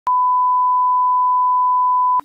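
A steady single-pitch 1 kHz test tone, the broadcast line-up tone that goes with colour bars. It begins a moment in and holds loud and unchanged.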